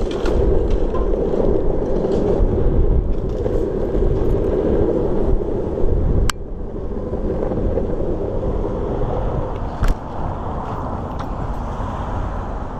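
Wind rushing over the microphone and rolling road noise while riding along a street, with a sharp click about six seconds in and another near ten seconds.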